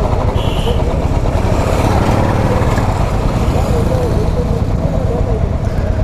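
Motorcycle engines running steadily at idle and low speed, a close, continuous low engine note with a fast even pulse.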